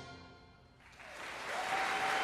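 The orchestra's final chord dies away into a brief hush, then audience applause breaks out about a second in and grows louder, with a steady whistle joining near the end.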